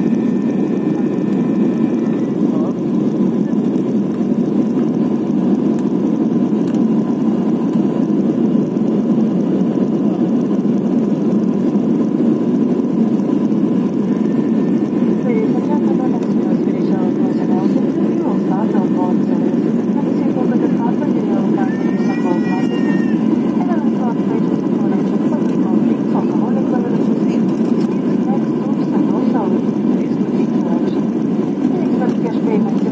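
Cabin noise of an Airbus A320-family airliner in flight, heard from a window seat: a steady, dense rush of engines and airflow with a faint steady tone. Faint passenger voices come and go under it.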